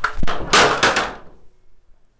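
A stepladder knocked over and clattering onto a hard floor: a quick run of loud knocks and bangs that dies away after about a second and a half.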